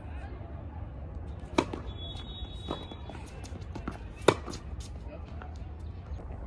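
Tennis ball struck by rackets twice in a rally, sharp pops about two and a half seconds apart, the second one the loudest, with a few fainter ticks between them, over a steady low outdoor rumble.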